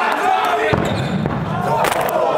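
Voices shouting during a dodgeball game, with one sharp thud near the end.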